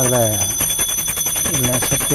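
A temple bell rung rapidly and without a break during the aarti lamp offering, with a steady high ringing over the quick strokes. A man's chanting voice runs over it at the start and again near the end.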